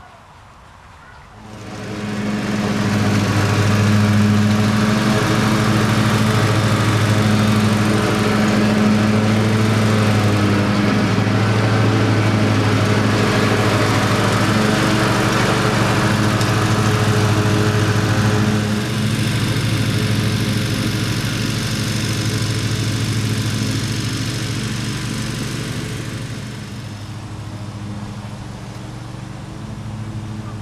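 Ride-on lawn mower engine running steadily while mowing. It comes in suddenly about a second and a half in, then drops somewhat in loudness in the latter part.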